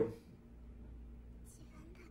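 Faint whispered speech about a second and a half in, over a low steady hum; otherwise quiet.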